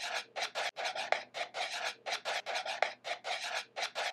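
White marker pen writing on a black board: a quick run of short, scratchy strokes, several a second, as letters are drawn.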